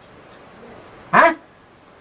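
A single short spoken "haan?" about a second in, its pitch rising like a question, over quiet room tone.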